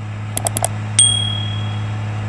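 Subscribe-button sound effect: four quick clicks, then a single bell ding about a second in that rings on for most of a second. Underneath is the steady low hum of the JCB 3230 tractor's engine running as it tills.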